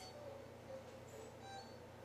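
Very quiet: a low steady hum with faint background music.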